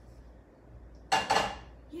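Skillet set down on a gas stove's burner grate: a sudden metal clank about a second in, with a brief ringing that dies away within half a second.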